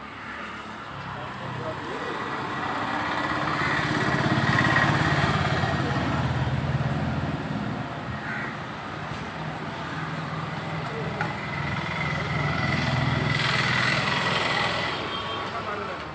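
Road traffic: motor vehicles passing on the street, their engine noise swelling and fading twice, the second time with a steady high tone over it.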